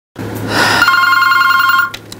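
Desk telephone's electronic ringer sounding a fast two-tone warbling trill, which cuts off near the end as the call is answered.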